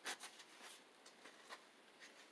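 Near silence, with a few faint rustles and scrapes of a sheet of scooter grip tape being handled and turned over, the clearest right at the start and another about a second and a half in.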